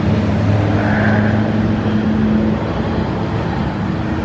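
A steady low machine hum with a faint higher sound briefly about a second in.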